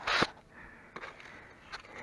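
A short sharp sniff right at the start, then faint handling noises with a couple of light clicks as the 24 mm filter cap on the engine side cover is handled.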